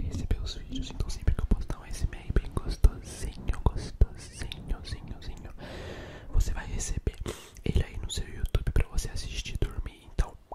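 ASMR mouth sounds made right against the microphone: rapid wet clicks and pops of lips and tongue, many per second, mixed with soft whispering. A breathy hiss rises briefly about six seconds in.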